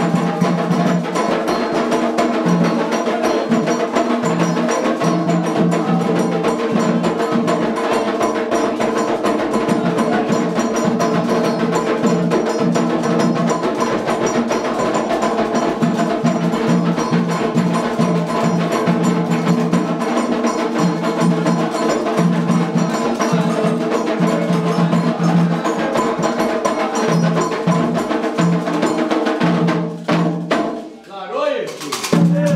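Candomblé ritual music: hand drums and a struck bell keep up a fast, steady, dense rhythm for the dance.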